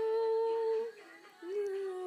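A girl humming unaccompanied: one long held note that stops about a second in, then after a short pause a lower held note.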